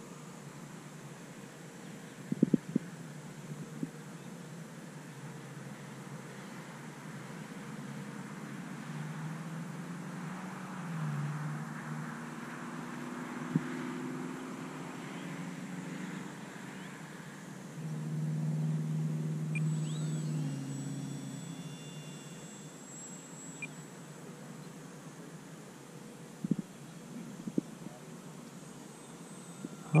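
Open-air background with a distant motor drone that swells and fades twice, about ten and twenty seconds in. A few sharp clicks are heard near the start and near the end.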